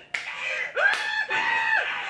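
A woman laughing hard in high-pitched, drawn-out shrieks, a few long squealing bursts one after another.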